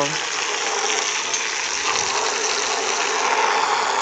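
Garden hose running, a steady stream of water gushing out and splashing onto wet dirt.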